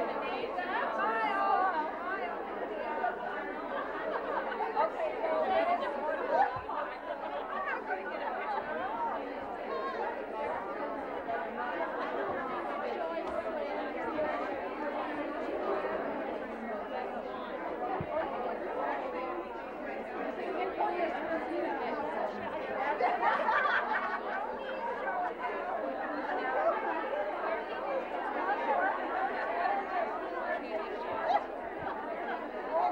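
Many women talking at once: steady overlapping chatter in a room, with no single voice standing out.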